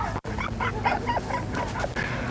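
A rapid series of short, high yips and whimpers, about five or six a second, like a small dog.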